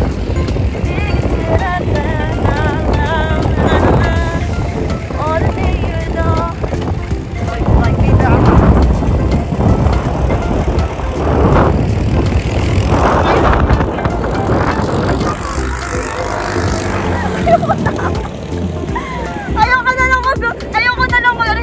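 Wind buffeting a phone's microphone during a bicycle ride, a continuous low rumble, with voices and music heard over it at times.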